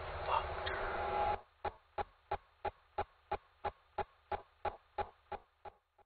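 A man's brief shout over a noisy film soundtrack, which cuts off about a second and a half in. It is followed by even ticks, about three a second, that fade out near the end.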